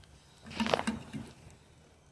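A person slurping a taste of hot chocolate off a spoon: one short sip about half a second in.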